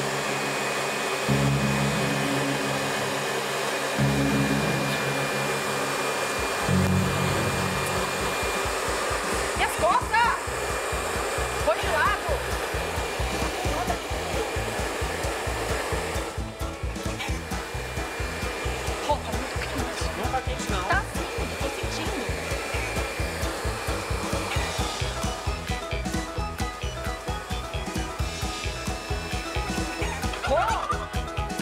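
Handheld hair dryer running steadily, its blowing hiss carrying a thin steady whine, with background music with a pulsing beat underneath.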